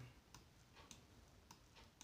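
Near silence: room tone with a few faint, unevenly spaced clicks.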